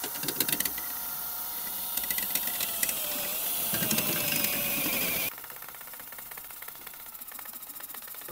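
A cordless drill spins a chimney-sweep brush down a stove flue pipe, with clicking and rattling from the brush inside the pipe. The drill's whine dips in pitch about three seconds in and cuts off suddenly a little after five seconds.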